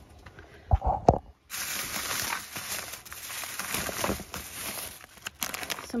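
Thin plastic grocery bags rustling and crinkling as hands rummage through them, after two dull thumps about a second in.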